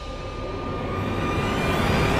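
A rising whoosh sound effect that swells steadily louder, with a faint upward-gliding pitch inside it.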